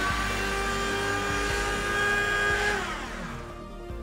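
Small laser printer running as it prints a test page: a steady motor whine that winds down about three seconds in.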